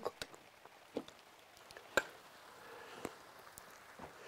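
Faint wooden knocks about once a second from a motor-driven woodcutter figure in a nativity crib, its axe striking a log as the crib's mechanism runs under test.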